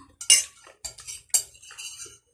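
Metal spoon clinking and scraping against a plate while scooping rice, three sharp clinks about half a second apart.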